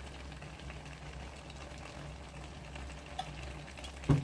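Chayote, chicken and shrimp stir-fry simmering in a wok, a faint steady bubbling over a low hum, with a couple of light clicks near the end.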